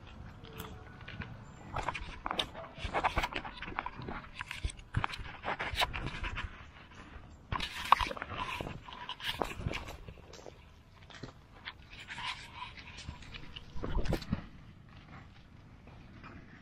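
Close-up rustling and irregular snips and crunches of rice paddy herb stems being cut and gathered by hand, coming in busy spells with short pauses.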